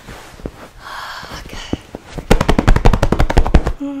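Hands rubbing and rustling on a blanket, then a loud, rapid run of fast patting, about a dozen taps a second for about a second and a half.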